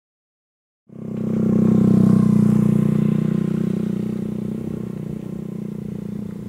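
Silence, then a motorcycle engine cuts in about a second in, running steadily. It is loudest about two seconds in and slowly fades as the bike rides away.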